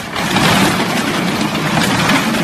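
A wire cart full of plastic balls tipping over with a sudden crash, then a long, dense clatter as the balls spill and bounce across a hard store floor.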